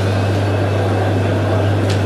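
Steady low electrical hum with hiss from the sound system, with no voice in it; a brief hiss sounds near the end.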